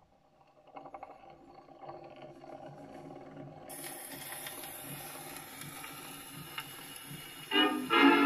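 Hiss and crackle of a 78 rpm shellac record's run-in groove played through an acoustic gramophone, growing from about a second in. Near the end, a 1920s dance-band fox trot starts playing from the record, much louder.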